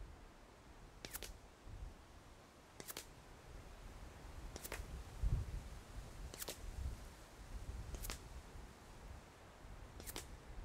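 Five faint, sharp reports of a suppressed .22 pistol heard from about 120 yards away, spaced roughly 1.7 seconds apart. Gusty wind rumbles on the microphone underneath, loudest about halfway through.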